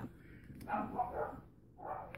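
A dog barking a few times, set off by bigger dogs next door.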